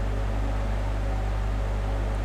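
A steady low hum with a faint hiss behind it: the room's background noise in a pause between spoken phrases.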